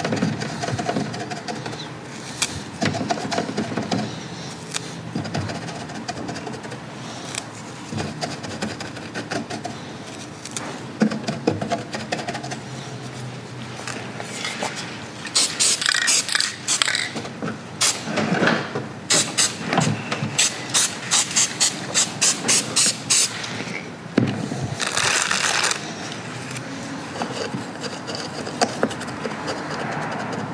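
Dry fake grass and scenic moss rustling and crackling as they are handled and pressed onto a model. About halfway through comes a run of short, crisp hissing bursts, about two a second, then a single longer hiss of a second or so.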